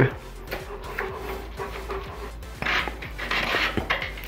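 Handling noises of a lock-on grip being twisted and slid off a mountain bike handlebar: scattered small clicks, then two short rubbing sounds near the end.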